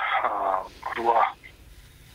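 A man speaking over a telephone line, the voice thin and narrow. He pauses about a second and a half in.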